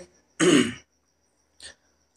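A man clearing his throat once, a short rasping burst with a falling pitch, followed a second later by a faint click.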